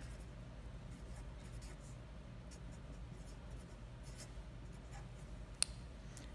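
Felt-tip Sharpie marker writing on paper: faint, short scratchy strokes, with one sharp click near the end.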